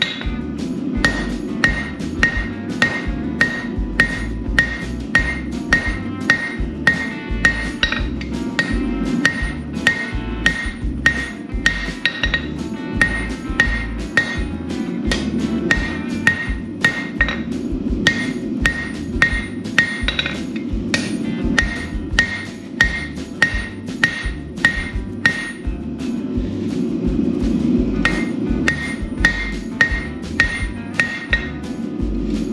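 Hand hammer striking red-hot steel bar on an anvil in steady blows about two a second, each blow with a bright anvil ring, as the jaw of a pair of tongs is forged. The blows thin out briefly near the end.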